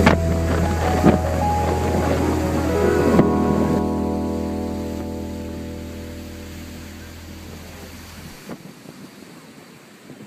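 Background music ending: a held chord fades out over several seconds, and its deep bass stops about eight seconds in.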